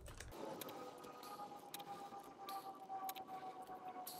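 A slow, drawn-out breath through an albuterol inhaler, lasting about four seconds, with a faint steady whistle that cuts off suddenly at the end, and a few faint clicks.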